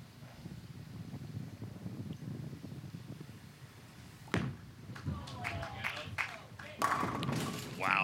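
Ten-pin bowling ball rolling down a wooden lane with a low rumble, then crashing into the pins near the end with a loud clatter of pins, leaving the ten pin standing. There is a single sharp thud about four seconds in, and voices call out in the seconds before the pin hit.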